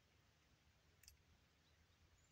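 Near silence: faint outdoor background with a single faint high click about a second in.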